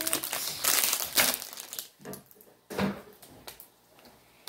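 Plastic packaging crinkling and rustling as it is handled, dense for about the first two seconds, then dying down to a couple of light taps.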